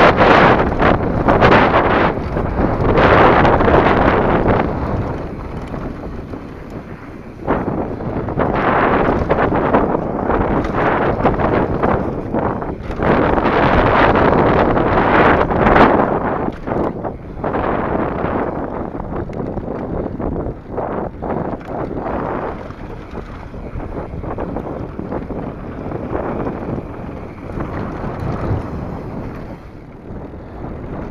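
Wind rushing over the microphone as a mountain bike descends a dirt trail at speed, with the tyres on dirt and short rattles and knocks from the bike over bumps. The rush swells and fades as the speed changes.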